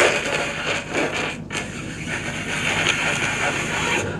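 A man making a long hissing, rushing noise with his mouth into a handheld microphone, a comic sound effect. It starts suddenly and breaks briefly about one and a half seconds in.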